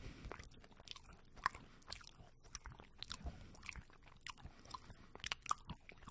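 Close-miked chewing of a coconut and chocolate snack bar, with irregular crisp crunches and wet mouth clicks, a few a second.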